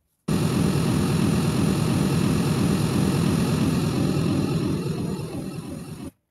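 Pink-noise test signal for a Smaart transfer-function measurement, a steady hiss with a heavy low end that switches on suddenly and cuts off abruptly about six seconds later: a timed measurement run on the loudspeaker.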